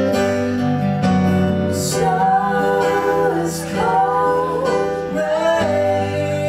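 A small live band playing a slow ballad: acoustic guitar strumming over piano and bass, with a melody line gliding between notes above them.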